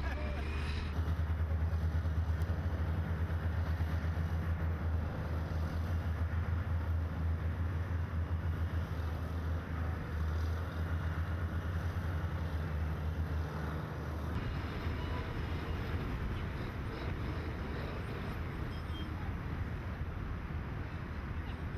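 A heavy diesel engine running steadily with a deep drone, which cuts off abruptly about three-quarters of the way through, leaving a lighter, noisier background.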